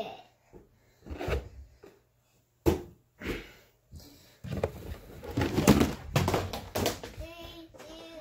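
A sharp knock about two and a half seconds in, then a stretch of rustling and shuffling movement with short knocks. Brief indistinct voices come near the end.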